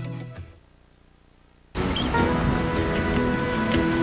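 Dramatic soap-opera music fading out, then a second of quiet. About halfway through, the steady rush of river water starts abruptly, with soft steady tones of music under it.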